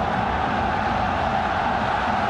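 Steady stadium crowd noise from a full football stadium, an even wash of many voices with no single sound standing out.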